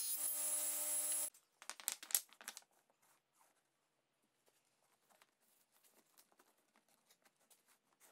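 A table saw running with a steady whine that cuts off abruptly about a second in. A few faint wooden clicks and taps follow as small mitred pieces are set together on a bench, then near silence.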